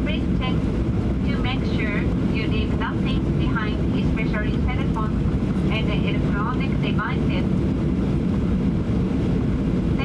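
Steady low rumble inside the cabin of a Boeing 737-800 airliner taxiing after landing: engine noise and the roll of the wheels on the taxiway.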